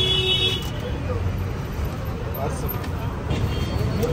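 Roadside street ambience: a steady low traffic rumble with people talking in the background. A brief high-pitched tone ends about half a second in.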